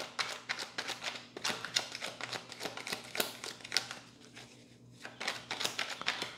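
Tarot cards being shuffled and handled by hand: a quick, irregular run of card clicks and snaps, with a short lull about four seconds in.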